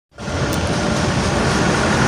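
Steady road traffic noise: the engine rumble of approaching vehicles, a dump truck and motorbikes among them.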